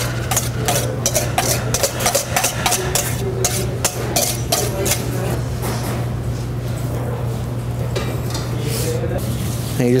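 Rubber spatula scraping and clicking against a stainless steel mixing bowl in quick, irregular strokes as beaten egg whites are folded into a lemon batter, over a steady low hum.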